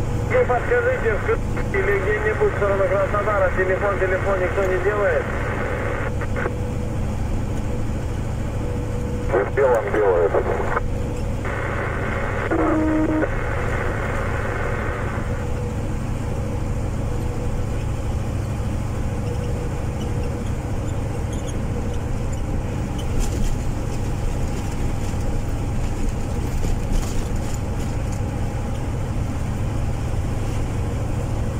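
Steady engine and tyre drone inside a moving vehicle cruising on a highway, a constant low hum with no change in pace.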